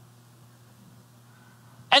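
A quiet pause between a man's sentences, holding only a steady low hum and faint room tone; his voice starts again at the very end.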